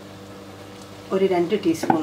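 A person speaking, starting about a second in, over a steady low hum.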